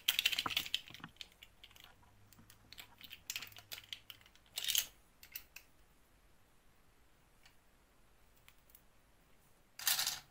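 Faint light plastic clicks and rustles from a small toy doll being handled and its clip-on dress pulled off, in a few short clusters with a quiet stretch between. Near the end a brief burst of clicks as the doll is set down among small plastic beads.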